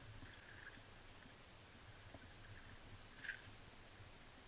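Near silence: faint outdoor ambience with a low hum, broken by one brief faint noise about three seconds in.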